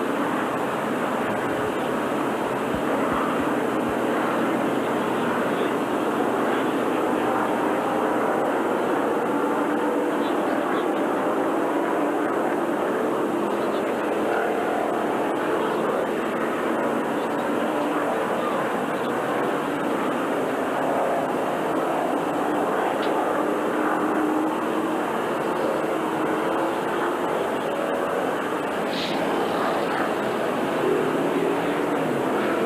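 A field of NASCAR Winston Cup V8 stock cars running together at reduced pace under caution: a steady, loud drone of many engines whose pitch shifts slowly as the cars circle.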